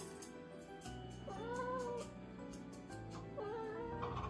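A young cat meowing twice, each meow arching up and down in pitch, the second shorter and near the end, over background music.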